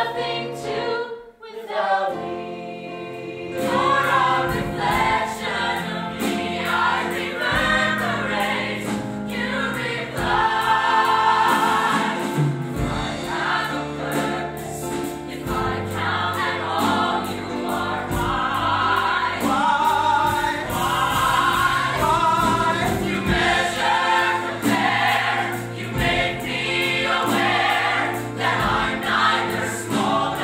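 A musical-theatre cast singing together in chorus. The sound drops briefly about a second in, then the voices carry on.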